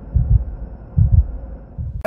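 Two low double thumps, like a heartbeat, about 0.8 s apart, over a faint steady hum.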